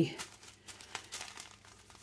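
Faint crinkling of plastic zip bags of diamond painting drills being handled and fanned out, with a few small scattered crackles.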